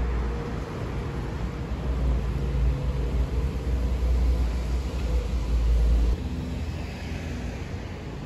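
A small shuttle bus driving past on the street with a low engine rumble over general traffic noise. The deep rumble cuts off suddenly about six seconds in.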